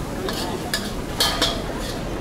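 Metal cooking utensils clinking and scraping against pans at a street-food stall's griddle and wok station: several short, sharp strikes, the loudest two a little over a second in.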